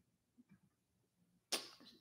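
Near silence with a few faint ticks, then about a second and a half in a sudden sharp burst of noise that dies away quickly.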